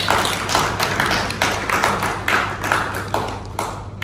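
Audience applauding: many hands clapping in a dense, irregular patter that eases slightly near the end.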